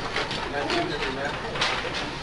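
Babble of many students talking at once in a classroom, overlapping voices with no single clear speaker.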